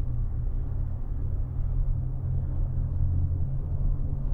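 Steady low rumble heard inside a moving monocable gondola cabin as it travels along the haul rope, with faint light ticks over it.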